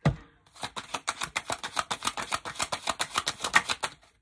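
A tarot deck being hand-shuffled: a knock, then a fast, even run of card clicks, about nine a second.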